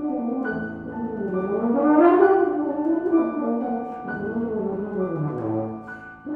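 Euphonium playing a winding melodic line with piano accompaniment, swelling to its loudest about two seconds in.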